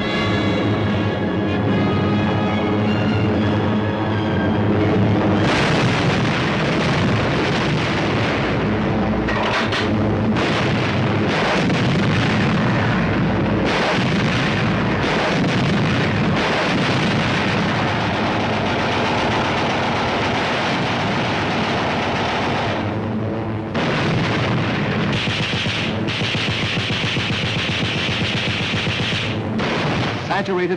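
Aircraft engines droning on an old film soundtrack. About five seconds in, sustained rapid gunfire and blasts from strafing bombers take over, with a brief break about two-thirds through before the firing resumes.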